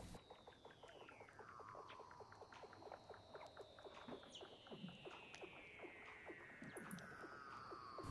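Faint seal calls: long whistles that glide steadily downward in pitch, a short one at the start and a longer one from about three seconds in, over a steady train of faint clicks, about five a second.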